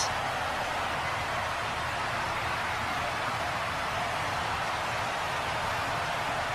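Steady, even hiss with no distinct events.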